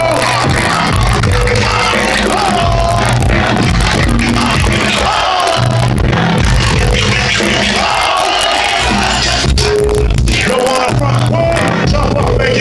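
Live hip-hop: a loud, steady beat with heavy bass played through a club sound system from the DJ's turntables, with crowd noise and voices over it.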